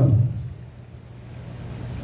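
A pause in speech filled by a steady low hum, after the tail of a man's drawn-out 'uh'.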